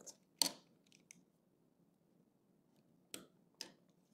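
Plastic Lego bricks clicking as pieces are handled and pressed onto a small train engine: a few separate short clicks, two of them close together near the end.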